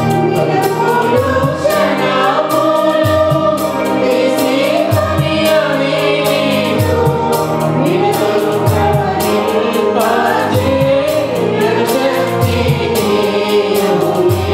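Small mixed church choir singing a Telugu Christian worship song into microphones, accompanied by an electronic keyboard with a steady beat and bass.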